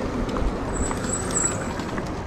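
Busy city-square ambience with a steady low rumble, and a thin high-pitched hiss for most of a second near the middle.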